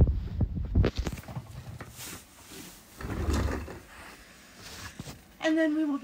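Shuffling and rustling as a person moves about on a carpeted floor and handles sheets of paper, with a few soft knocks in the first second.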